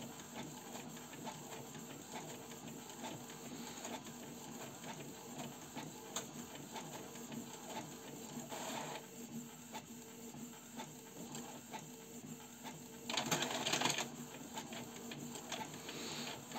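Canon G3411 and Epson L132 ink-tank inkjet printers running in fast print mode: a steady mechanical hum with a rapid fine clicking of the print mechanism. There is a brief louder stretch about halfway through and a louder burst of about a second near the end.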